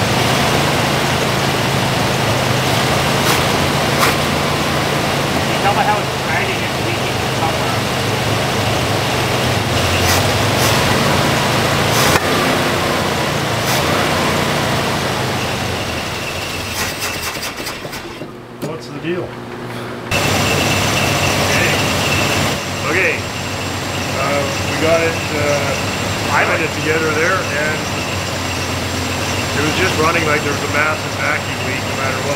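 Dodge crew cab truck's carbureted V8 running poorly, with a steady low drone, because of a bad vacuum leak that keeps it from holding an idle on its own. The engine sound fades a little past halfway, breaks off briefly, then carries on under voices.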